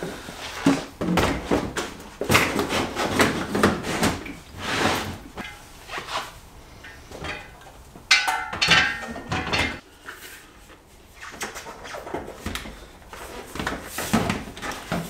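Plastic milk crates and tools being loaded into a car trunk: irregular clunks, knocks and rattles of gear being set down and shifted.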